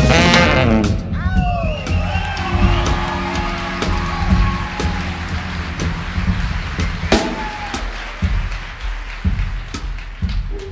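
Live jazz band playing: a wavering, bending lead line over bass, piano and drums, softer after about a second, with sharper drum strikes toward the end.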